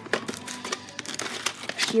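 Plastic VHS clamshell case being handled and opened, and the cassette pulled out: a quick run of clicks and crinkly plastic rattles.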